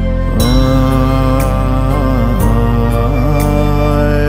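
Bhutanese Buddhist prayer song (choeyang) in a slow, mantra-like style. A male voice comes in about half a second in, holding long, gently bending notes over a steady drone, with a light tick about once a second.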